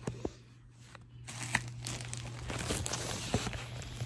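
Handling noise as a phone camera is picked up and repositioned: rustling and crinkling with a few light knocks, quieter in the first second.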